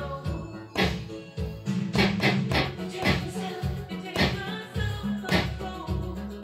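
Recorded music with a steady beat and bass line playing, with noisy electronic handclaps from a homemade SynClap handclap generator triggered by tapping its piezo pickup, roughly once a second.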